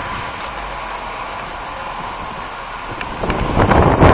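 Wind blowing across a handheld camera's microphone: a steady rushing noise, with a few clicks about three seconds in and a louder gust near the end.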